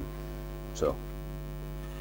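Steady low electrical mains hum, a constant buzzing drone with many overtones.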